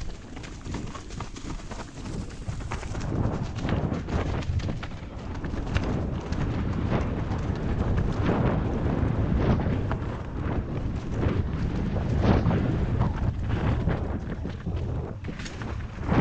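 A Canyon Torque carbon full-suspension mountain bike descending a leafy dirt singletrack: continuous tyre and wind rumble on the helmet microphone, with frequent knocks and rattles from the bike going over roots and stones.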